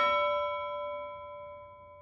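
A single struck chime-like note for an intro logo sting. It rings with several clear tones at once and fades away steadily.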